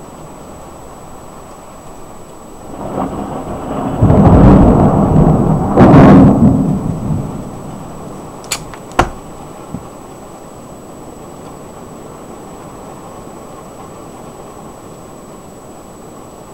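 Thunder from a nearby lightning strike: a rumble swells about three seconds in, becomes very loud with two peaks, and rolls away by about eight seconds. A few sharp clicks follow, over a steady background hiss.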